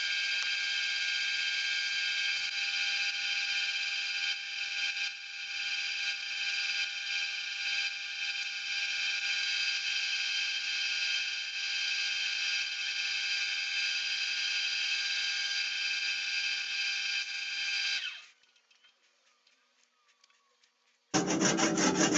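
Wood lathe running with the beech workpiece spinning under abrasive: a steady whine with a sanding hiss, which stops suddenly about 18 seconds in when the lathe is switched off. After a few quiet seconds, a pull saw starts cutting through the wood with fast rasping strokes near the end.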